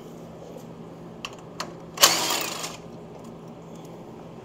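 Cordless impact driver running in one short burst of under a second, taking out a footboard mounting bolt, after two light metal clicks.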